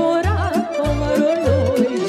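Lively Romanian folk dance music by a lăutari band: a steady, heavy bass beat about every 0.6 s under a wavering, richly ornamented melody line.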